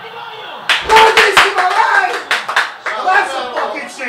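Several people clapping their hands in a small room, breaking out suddenly about a second in, with excited shouting over the claps.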